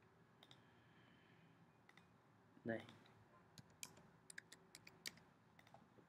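Faint computer mouse clicks and keyboard key presses: a scattered run of about a dozen short clicks, busiest in the second half, as a drop-down choice is made and an amount is typed.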